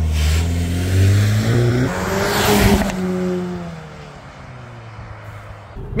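Cupra Ateca's 2.0 TSI turbocharged four-cylinder accelerating away, the revs climbing over the first two seconds, then falling and fading as the car moves off. A rush of tyre noise on the frosty gravel comes about two seconds in.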